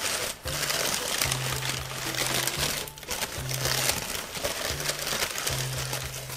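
Crumpled packing paper rustling and crinkling as a heavy model train piece is unwrapped by hand. A low steady hum starts and stops several times alongside it.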